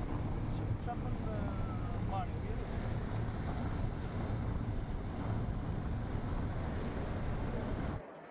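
Steady road and engine noise inside a Nissan's cabin while driving at highway speed: an even, low rumble that runs without change.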